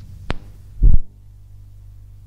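A sharp click, then about half a second later a louder low clunk, after which the tape hiss cuts off and only a low steady hum remains: a cassette recorder's mechanism clicking to a stop.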